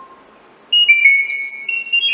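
Chirp data-over-sound signal from a Google Home Mini's speaker: after a short pause, a quick run of high, pure beeping tones that step from pitch to pitch. It is the encoded "turn on the lights" command being sent to the Arduino Nano 33 BLE Sense's microphone.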